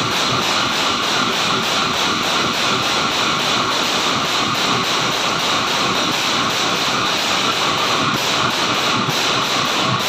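Bortal ensemble of many large bell-metal cymbals clashed together in a fast, continuous, unbroken wash, with drums beating underneath.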